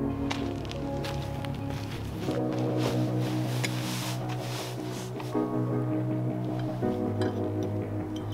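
Background music of sustained chords that change every second or two, with a scatter of light clicks through the first half.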